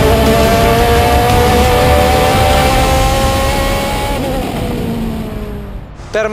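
Osella FA30 race prototype's Zytek engine heard onboard, pulling hard up a hill with its note climbing slowly through one gear. A little past four seconds in, the revs fall off and the sound fades away.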